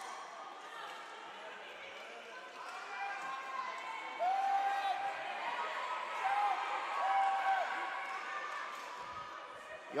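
Game sounds in a wheelchair basketball hall: a basketball bouncing on the hardwood court amid a steady murmur of crowd and players, with three short held calls in the middle.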